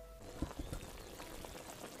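Faint watery dripping and trickling, with a few light drips about half a second in.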